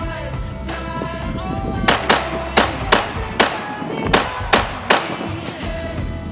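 Kimber 1911 pistol fired in rapid succession: eight sharp shots in about three seconds, starting about two seconds in, over a song with singing.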